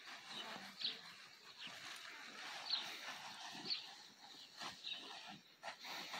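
Short, falling bird chirps about once a second over a faint rustle of the plastic tarp draped on the horse, with a few sharp clicks near the end.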